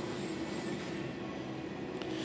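A steady mechanical hum with one faint, even tone running through it and no distinct knocks or changes.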